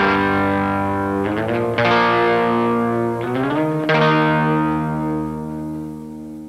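Electric guitar chords struck about every two seconds, each reached by a slide in pitch. The last chord, about four seconds in, rings out and fades away as the song ends.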